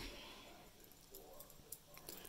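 Near silence: room tone, with a faint soft tick or two near the end.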